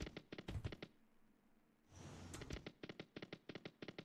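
Faint sound effects of an online video slot as its reels spin and land: quick runs of thin clicks and taps. The clicks pause to near silence about a second in and come back, denser, after about two seconds.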